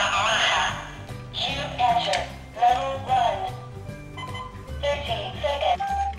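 Rubik's Revolution electronic puzzle cube playing its game music from its small built-in speaker: an electronic tune of short steady notes over a repeating bass line.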